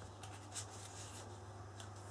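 Faint rustling and scraping of paper and cardstock as a patterned paper tag is slid down into a pocket on a handmade album page, with the clearest brush of paper about half a second in. A steady low hum runs underneath.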